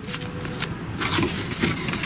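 Paper and card being handled and folded by hand: soft rustling with a few light taps.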